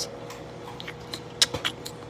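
Microwave oven running with a steady hum while a bag of popcorn pops inside: a few scattered pops, the loudest about one and a half seconds in.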